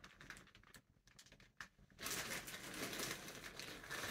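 Plastic garment covers of clear film and black fabric being handled and shaken out, the plastic crinkling and rustling. A few faint ticks in the first half, then steadier, louder rustling from about halfway.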